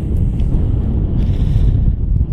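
Wind buffeting the microphone: a loud, unsteady low rumble.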